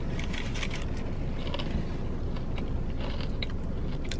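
A bite into a burger and chewing, with short crinkles of its paper wrapper, over the steady low hum of a car's cabin.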